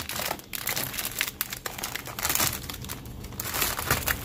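Plastic wrappers of biscuit rolls and cracker packets crinkling and rustling irregularly as a hand moves and sorts them, dipping a little about three seconds in.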